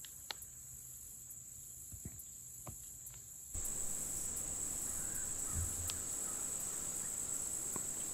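Insects singing in one steady, high-pitched drone, with a few faint clicks; about halfway through, the background and the drone suddenly grow louder.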